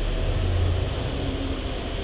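Steady low hum with an even hiss from an amplified karaoke sound system, its microphone channel open and idle while a digital karaoke processor loads a preset.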